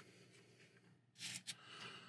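Near silence, with a brief faint rustle and a couple of small clicks about a second and a half in, from hands turning over a bare die-cast car chassis.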